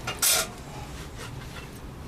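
Steel planer blades being unwrapped by hand from a cloth rag: a brief sharp rustle about a quarter second in, then quieter handling noise of cloth and metal.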